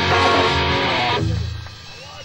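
Rock band playing live with electric guitar, cutting off on a final hit about a second in, with a low note left ringing and fading.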